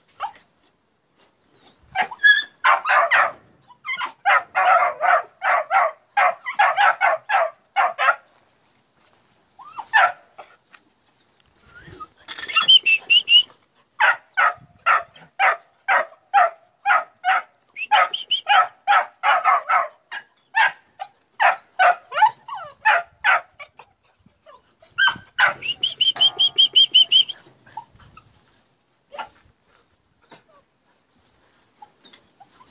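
Puppies barking in long runs of short, fairly high-pitched yaps, about three to four a second, broken by short pauses, with a drawn-out whine near the end.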